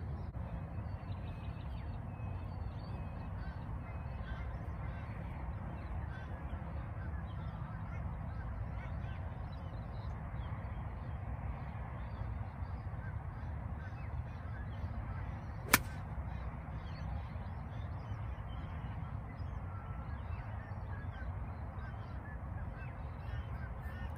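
A golf club striking a ball once, a single sharp click about two-thirds of the way through. Faint bird calls and a steady low rumble run underneath.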